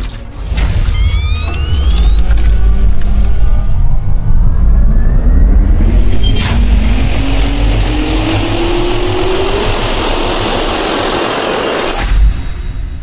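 Sound effect of a jet turbine spooling up: a whine climbs steadily in pitch over a heavy rumble and rushing air. Rising swooshes come early on, and there is a sharp hit about six and a half seconds in.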